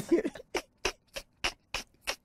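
Two men laughing: a short voiced laugh, then a run of breathy, wheezing laugh bursts, about three a second.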